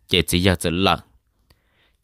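Speech: a voice talking for about a second, followed by a single short click.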